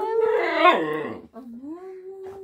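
A dog howling in reply to a "good morning" prompt, the vocal "good morning" it has been taught: a loud, wavering howl for about a second that drops away, then a quieter, long, steady howl that rises and holds.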